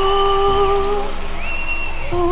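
A young man singing a slow ballad into a handheld microphone over a soft musical backing. He holds one long, steady note through the first second, then breaks off while the backing carries on.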